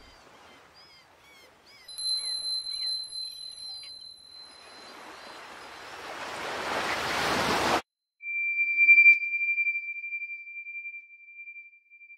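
Bird chirps, then two steady high electronic tones, then a rising rush of noise that cuts off suddenly. After a moment of silence comes one long, steady high tone.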